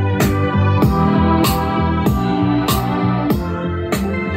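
Music playing through a Tribit StormBox 2 Bluetooth speaker: a steady beat of about one hit every 0.6 seconds under sustained chords and a bass line.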